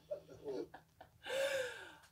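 A woman's breathy gasp about halfway through, its voice falling in pitch, after a second of faint, low speech.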